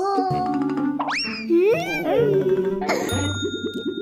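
Cartoon sound effects over light backing music: a whistle-like rising glide, then wavering falling tones, then a bright ding that rings on with a fast rattle beneath it near the end.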